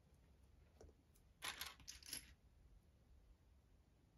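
Faint clicking of small plastic Lego bricks being handled and picked from a plastic parts organizer: a short cluster of light clicks about a second and a half in, otherwise near silence.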